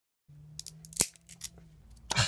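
A few small clicks and one sharp snap about a second in, from hands handling a small object close to the microphone, over a faint low hum.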